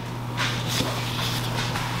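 Soft rubbing and rustling of nitrile-gloved hands working a small bar of soap out of a flexible silicone mold, over a steady low hum.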